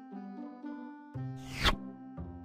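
Soft background music with held keyboard-like notes, and about one and a half seconds in a short, loud rising whoosh: a slide-transition sound effect.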